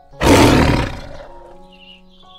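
A single big-cat roar, sudden and loud about a quarter-second in and fading away over about a second, laid over soft background music.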